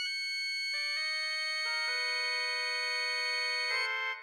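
Organ playing slow held chords: high notes sustain while new, lower notes join one after another, building the chord, with a fresh chord struck near the end.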